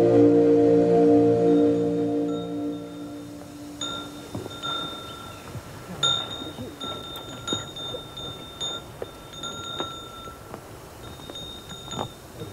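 A low, wavering drone of stacked tones fading away over the first three seconds or so, then high, clear bell tones ringing on and off with light ticks from about four seconds in.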